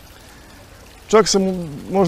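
Tiered courtyard fountain running, a steady trickle of falling water in the background. A man starts speaking a little over a second in.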